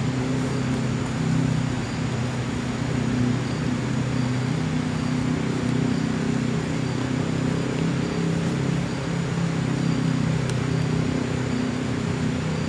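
A steady low hum made of several held low tones, with faint high chirps repeating about every half second.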